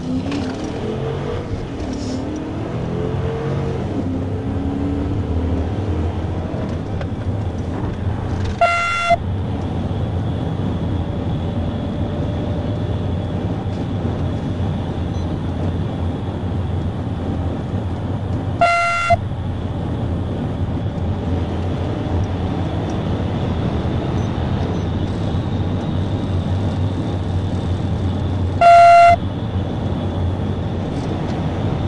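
Police patrol car accelerating hard up to highway speed, heard from the cabin: the engine revs climb in the first few seconds, then steady engine, tyre and wind noise at around 90 mph. A short, horn-like beep sounds three times, about ten seconds apart, the last one loudest.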